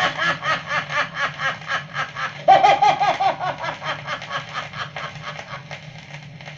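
A man's recorded laughter, a long run of rapid 'ha-ha' chuckles about four a second with a louder burst a little before the middle, fading away near the end. It is played back from a worn 78 rpm shellac record, with a steady low hum underneath.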